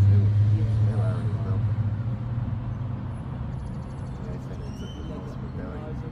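Low engine rumble of a passing road vehicle, loudest at first and fading away over the first few seconds, with faint voices.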